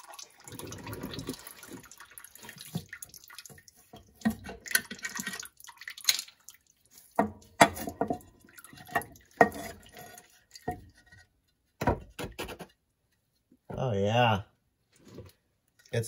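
Water and old gear oil splashing and dripping into a drain pan as the cover comes off a Dana 44 differential, with scattered sharp clicks and knocks of metal. The fluid is mostly water, with little gear oil left in the axle.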